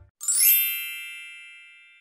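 A bright chime sound effect: a quick rising shimmer about a quarter second in, then a cluster of high ringing tones that fade away slowly, the kind of cue used for a daydream transition.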